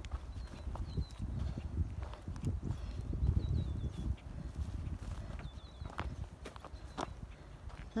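Footsteps through a grassy meadow over a low rumble on the microphone, while a small bird repeats a short high chirp several times.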